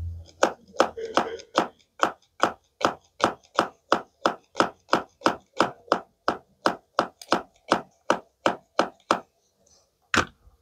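Pink plastic toy knife tapping down on a plastic toy strawberry and the plastic cutting board beneath it in a steady, even rhythm of sharp taps, about three a second. The tapping stops about a second before the end.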